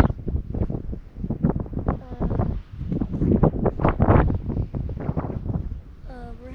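Wind buffeting the camera microphone in uneven gusts, a loud low rumble that swells and drops.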